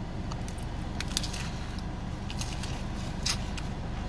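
Crisp crunching and chewing of a bite of a fried chicken sandwich topped with Cheetos: scattered short crackly clicks. Underneath runs a steady low hum from the car.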